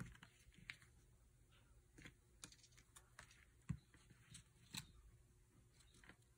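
Near silence with a few faint rustles and light taps of cardstock being handled and held in place against a paper card, the sharpest tap a little past the middle.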